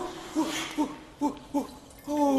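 A man's voice giving short, rhythmic moaning grunts, five in a row at about two and a half a second, getting a little quieter toward the end.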